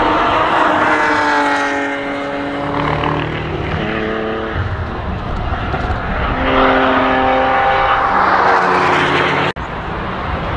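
A BMW E36 3 Series saloon's engine passing close through a corner, its note falling as it goes by and then pulling away down the track, followed by more engine sound from cars on the circuit. The sound breaks off abruptly near the end.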